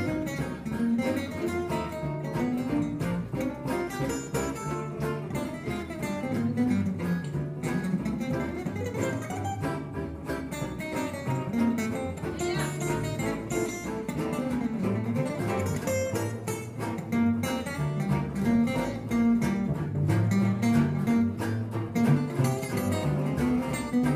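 Acoustic string jazz band playing an instrumental passage: three acoustic guitars strumming and picking a steady rhythm over double bass, with violin.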